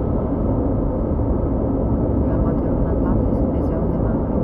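Steady in-cabin driving noise of a 2001 Audi A4 B6 with the 2.0 four-cylinder petrol engine: a low engine and road drone with tyre hiss from wet asphalt, holding an even level.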